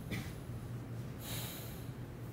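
A person breathing close to the microphone: a short breath just after the start and a longer hiss of breath from a little past one second, over a steady low hum.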